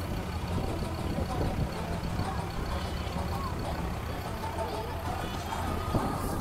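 Wind buffeting the phone's microphone as a steady low rumble, with faint background voices and music.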